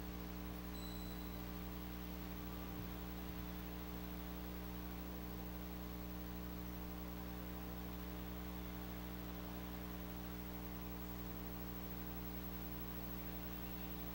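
Steady low electrical hum with an even hiss underneath: mains hum in the audio equipment's feed.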